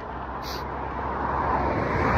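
A road vehicle approaching, its engine rumble and tyre noise growing steadily louder.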